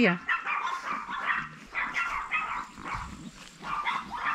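Young chihuahuas yapping and barking over and over in quick, high-pitched bursts while they tussle and harass another dog.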